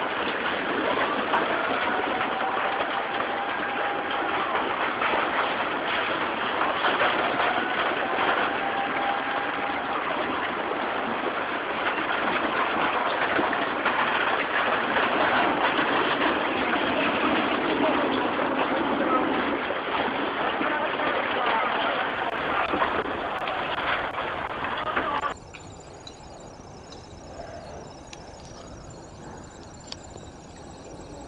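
Tsunami floodwater rushing through a town, a loud steady noise of churning water with crackling and crashing debris. It cuts off abruptly about 25 seconds in, leaving a much quieter hiss.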